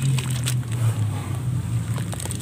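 Hands squeezing and crumbling wet sand mud under foamy water in a plastic tub: squelches, small crackles and sloshing. A steady low rumble runs underneath.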